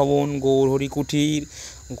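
A man's voice talking, with drawn-out syllables.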